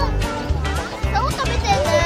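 A young child talking over background music with a steady beat.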